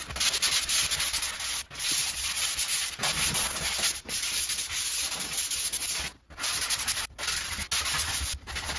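A dried spackle coat over a wall patch being hand-sanded with a sanding pad: quick back-and-forth rasping strokes in runs, broken by brief pauses, the longest about six seconds in.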